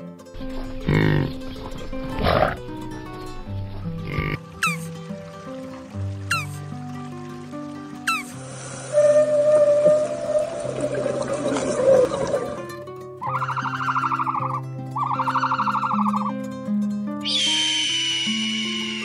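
Background music, a light stepping melody, with animal calls laid over it: three short falling whistles in the middle, two arched calls a little before the end, and a higher call starting just before the end.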